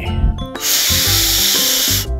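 A long, steady sniff, a person inhaling deeply with his nose against a new sneaker, starting about half a second in and lasting over a second, over background music.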